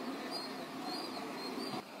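Short high chirps repeating about every half second, like a small bird calling, over a rough rushing noise that cuts off shortly before the end.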